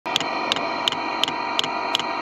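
Fuel dosing pump of a Chinese diesel heater ticking steadily, about three clicks a second, over the steady whine of the heater running.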